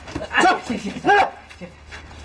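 A man's voice: two short cries whose pitch bends up and down, about half a second and a second in.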